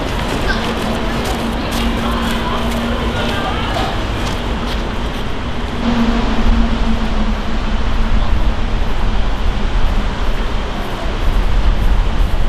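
Steady outdoor background noise with a strong low rumble and faint distant voices, plus a steady low hum through the first half. It grows louder about six seconds in.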